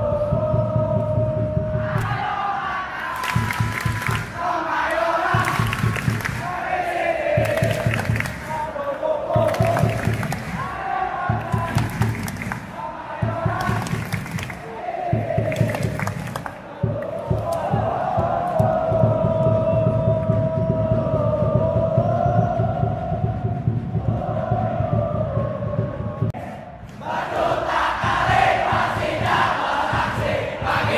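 Large football stadium crowd chanting and singing in unison to steady rhythmic beats. There is a brief lull near the end before the chanting swells again.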